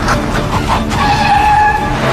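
Car tyres screeching under hard braking in a skid, ending in a long, steady, high-pitched squeal.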